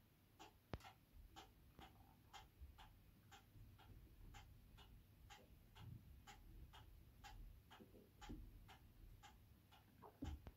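Faint mechanical clock ticking steadily, about two ticks a second. A single sharper click stands out about a second in.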